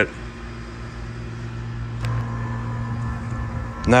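A steady low mechanical hum with outdoor background noise, growing somewhat louder about two seconds in.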